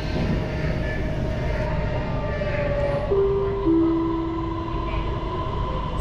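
Metro train running, heard from inside the carriage: a steady rumble with a thin electric whine. About halfway through, the whine steps down in pitch as the train slows on its approach to a station.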